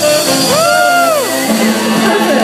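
A band playing music with a drum kit. Midway, a sustained note bends up, holds and slides back down.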